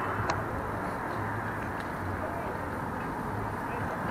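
Steady outdoor background noise in a parking lot: a low rumble and hiss with no distinct source, and a single short click about a third of a second in.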